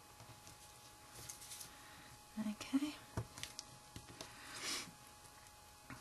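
Faint paper-handling sounds: soft rustles and a few light clicks as small punched cardstock pieces are pressed onto a paper owl. There is a short low murmur about two and a half seconds in.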